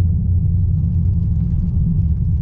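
Car engine and road noise heard from inside the cabin while driving: a low, steady drone.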